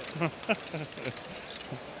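Faint background chatter with light plastic clicking and rattling from running LEGO ball-moving modules.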